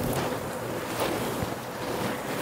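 Soft rustling and handling noise of cambric cotton suit fabric being moved and spread out close to the microphone.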